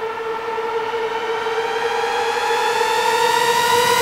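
Water from a hose filling a plastic bucket: a steady ringing tone that rises slowly in pitch and grows louder as the bucket fills.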